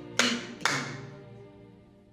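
Two hand claps about half a second apart, clapping out a pair of eighth notes as one beat split in two.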